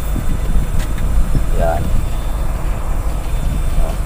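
Mitsubishi L300 van under way in third gear, its engine and road noise making a steady low rumble inside the cab, with a single brief click about a second in.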